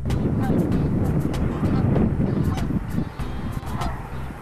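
Wind rumbling on the microphone, a dense low rush, with background music faint beneath it.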